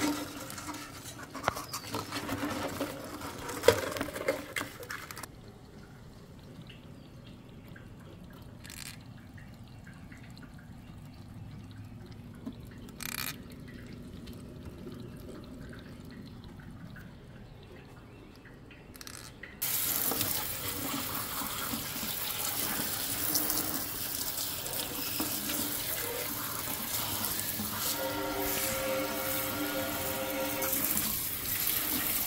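Water from a kitchen sink sprayer running steadily onto live blue crabs in a stainless steel sink, starting suddenly about two-thirds of the way through. Before it, metal tongs clatter against the crabs and the steel sink, followed by a quieter, muffled stretch with a few sharp clicks.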